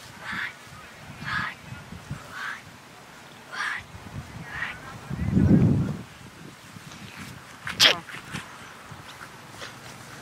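Short honk-like animal calls repeating about once a second, with a brief low rumble about halfway through and a sharp sound near the end.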